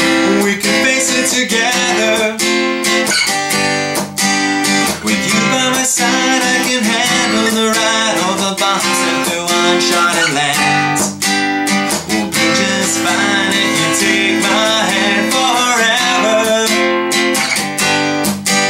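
Taylor acoustic guitar strummed in a steady, upbeat rhythm, with a man singing over it in places.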